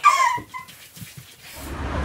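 A woman's voice singing briefly with a held note at the start, followed by a few faint clicks. About one and a half seconds in, the sound cuts to a steady low outdoor rumble.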